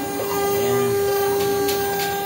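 CNC router spindle and drives running with a steady whine in two pitches as a 2 mm ball-nose end mill makes a finishing pass across a pine board. The lower tone grows stronger shortly after the start.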